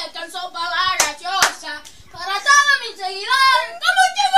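A high-pitched, child-like voice vocalising without clear words in wavering, gliding tones. Two sharp smacks come about a second in, half a second apart.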